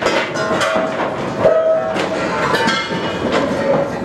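Rapid, irregular clanging knocks, several a second, each leaving a short ringing tone, like many hammers striking metal around a ship's slipway.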